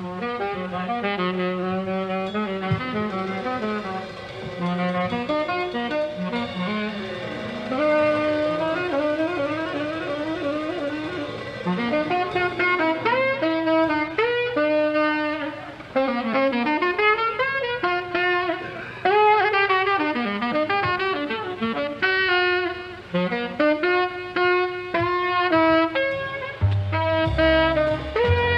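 Live jazz: a tenor saxophone plays a fast melodic line of many quick notes and runs.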